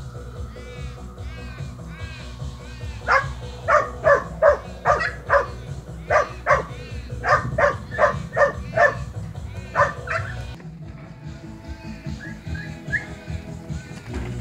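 A young working kelpie barking at sheep: a quick run of sharp, short barks, about two a second, from about three seconds in until about ten seconds in.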